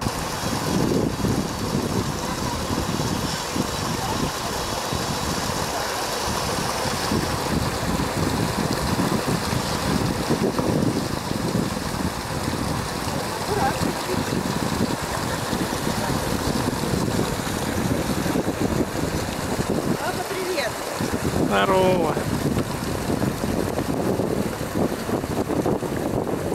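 Steady rush of water tumbling over the rocks of a cascade fountain, with a small child's brief vocal sounds about three-quarters of the way through.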